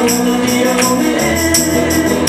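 Electric slide guitar in open D tuning, a Teisco, playing held notes that glide between pitches, with a tambourine shaken and struck on a steady beat.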